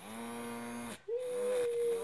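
Small battery-powered fan motor of a toy bubble gun whirring with a steady hum. It cuts out about a second in, then starts again, rising briefly in pitch before holding steady.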